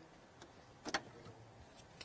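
Quiet handling of cotton quilt binding fabric as it is folded by hand, with a single light click about a second in.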